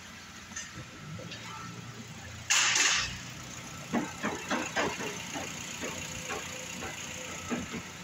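2007 Suzuki SX4's 2.0-litre four-cylinder engine running at idle as a faint low hum, with one brief loud rushing noise about two and a half seconds in. Footsteps on a concrete floor give a run of light knocks in the second half.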